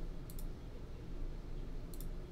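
A few faint sharp clicks over a low steady hum: a pair about a third of a second in and one near the end.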